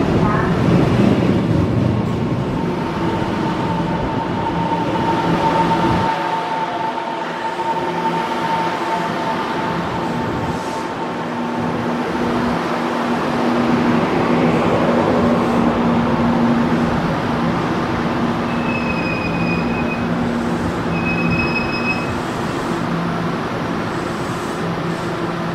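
Taiwan Railway EMU700 electric multiple unit slowing along the platform to a stop: steady rolling rumble of the cars with a steady electric whine, the low rumble falling away about six seconds in. Two short high beeps sound near the end.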